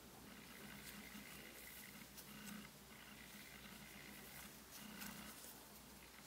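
Very faint scratching and light ticks of a metal crochet hook drawing yarn through stitches, over low room noise.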